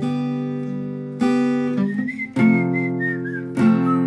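Acoustic guitar strummed, its chords ringing, with a fresh strum about every second. About halfway in, a whistled melody comes in over the guitar and steps down in pitch.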